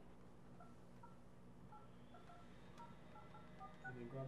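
Office desk phone's keypad being dialled: a quick, faint run of about a dozen short touch-tone beeps as the number keys are pressed.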